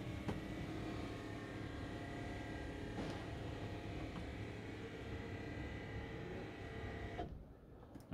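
Electric lift motor of a motorhome's drop-down bed over the cab, running steadily as it lowers the bed: a quiet, even hum with a thin high tone, stopping about seven seconds in.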